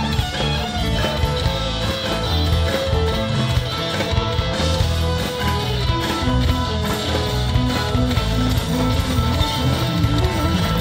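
Live Irish rock band playing an instrumental passage: fiddle bowing a tune with quick-changing notes over guitar, electric bass and drums.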